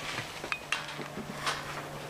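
A few light, sharp clicks and clinks, about four in two seconds, from Bernese mountain dog puppies playing with a rope toy and ball in a pen with a metal wire fence.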